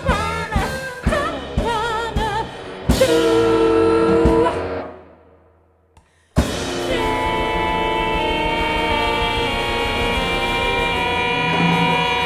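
Live art-rock band with singing, recorders and drum kit: a wavering sung melody over drum hits, then a loud held accent about three seconds in that dies away to a short near-silence. About six seconds in the band comes back in suddenly with long held notes and cymbals.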